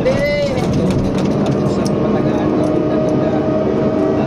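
Excavator's diesel engine running steadily as the machine travels along a road. A voice rises and falls over it for the first half-second, and steady tones come in about two seconds in.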